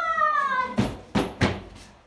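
A drawn-out high-pitched call, falling steadily in pitch, fades out within the first second. It is followed by three sharp thumps in quick succession.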